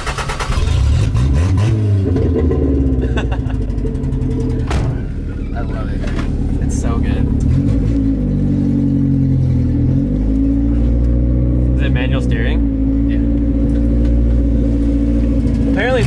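Toyota Corolla TE72 wagon's four-cylinder engine running on open headers with no exhaust, heard from inside the cabin while driving. The engine note rises as the car pulls away, then dips and climbs again at a gear change.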